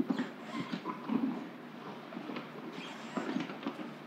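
Low room noise in a meeting hall: scattered shuffling, rustling and small knocks from people moving about, with a few faint, indistinct murmurs.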